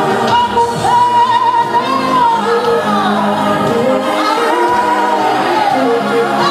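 Worship singing with instrumental backing, the melody carried in long held notes that slide from pitch to pitch over steady lower accompaniment.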